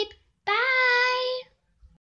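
A young girl's voice holding one long sung note for about a second, starting about half a second in.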